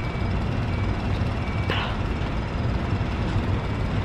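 Steady low rumble of wind buffeting the microphone, with one short higher sound about two seconds in.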